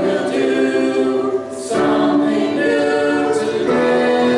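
Mixed church choir of men's and women's voices singing a hymn in held chords, with a short break about a second and a half in before the next phrase.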